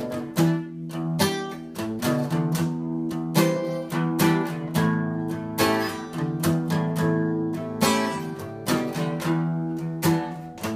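Acoustic guitar strummed in a steady rhythm of chords, with no singing over it: an instrumental break in the song.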